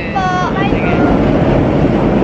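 A loud, steady rumble of vehicle noise. A short high-pitched call from a voice sounds over it at the start.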